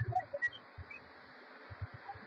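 Faint steady background hiss, with a few soft low bumps and tiny faint blips scattered through it.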